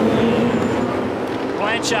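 Several V8 Supercar race cars' 5.0-litre V8 engines running hard together as the cars race nose to tail through a corner.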